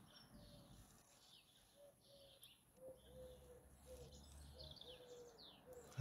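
Near silence with faint birdsong: scattered short high chirps and a lower note repeated several times.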